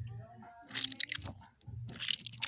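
A rubber squeeze toy with gel-filled bubbles being squeezed by hand, making two squishing noises, about a second in and again near the end.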